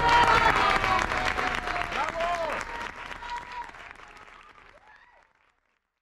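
Audience applauding, with a few voices calling out, fading away and cutting off about five seconds in.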